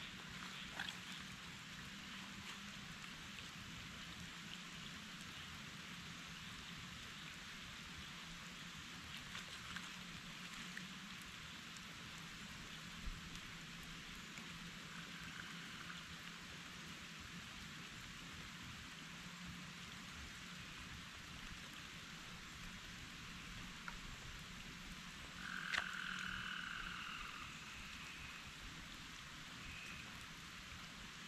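Faint riverbank ambience: a steady high hiss and a low hum, with frogs calling. The calls are faint and short in the middle, then one louder call lasts about a second and a half near the end, just after a sharp click.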